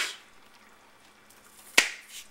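Kitchen knife slicing green onions on a plastic cutting board: a single sharp knock of the blade hitting the board near the end, with quiet room noise before it.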